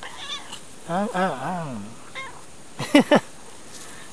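Tortoiseshell cat meowing short nasal "an" calls while being petted: a wavering call about a second in, then two short, falling calls in quick succession near the end.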